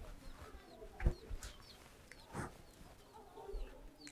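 Chickens clucking faintly in the background, with small chirps above them and a few short, soft knocks.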